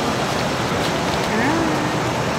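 Steady city street noise: an even hiss of traffic, with a faint, brief voice-like murmur about a second and a half in.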